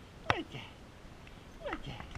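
A dog giving two short whines that fall in pitch, about a second and a half apart, the first sharper and louder.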